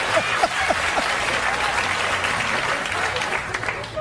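Studio audience applauding, with a few brief voices in it during the first second; the applause thins out near the end.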